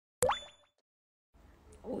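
A short edited-in sound effect: a quick upward-gliding plop with a thin high ringing tone, dying away within about half a second.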